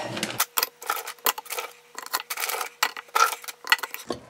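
Frozen-solid chicken drumettes knocking and clicking against each other and against the nonstick air fryer basket as they are packed in by hand, a string of irregular sharp clicks.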